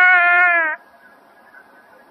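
Nadaswaram, the South Indian double-reed pipe, holding one long reedy note with slight wavers in pitch, cutting off under a second in. Only a faint hiss follows.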